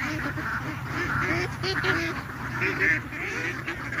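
A large flock of domestic ducks, around a thousand birds, calling continuously with many short, overlapping quacks.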